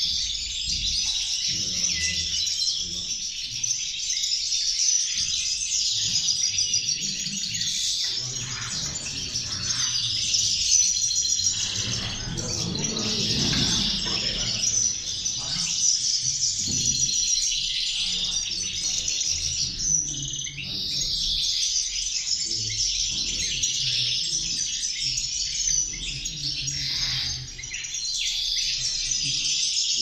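Several caged European goldfinches singing at once, a continuous overlapping stream of fast twittering and warbling phrases with no pause.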